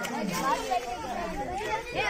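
Several voices talking at once: a group of boys chattering.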